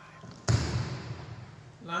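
A single sudden, dull thump about half a second in, fading quickly, between pauses in a man's speech.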